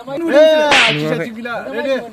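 A man's voice exclaiming loudly, with pitch that rises and falls, and a short sharp hissing burst about three quarters of a second in.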